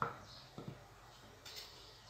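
Faint soft scuffing of a hand rolling baked cookies in powdered sugar on a plate, with a few light taps and knocks, the sharpest right at the start.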